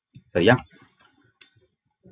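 A short spoken syllable, then a few faint clicks from a computer mouse as the document is scrolled.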